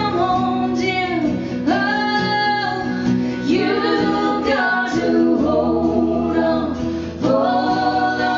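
A woman singing a slow country song live, with held, gliding notes, over acoustic guitar and a stringed instrument played flat across her lap. There is a short break in the singing a little after seven seconds.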